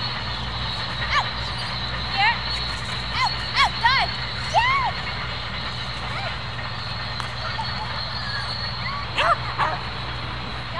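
Small dog yapping in short, high barks: a cluster between about two and five seconds in and a few more near the end, over a steady low hum.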